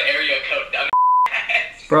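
A short, steady, high censor bleep, about a third of a second long, replaces a word about a second in, with the rest of the audio muted under it; voices talk and laugh on either side of it.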